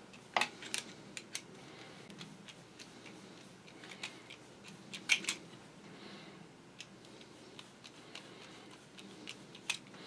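Small sharp metal clicks and taps as a screwdriver works a screw on a Singer 66 sewing machine's feed-lift linkage and the loose steel linkage bar is lifted off: several clicks in the first second and a half, a pair about five seconds in, and one near the end.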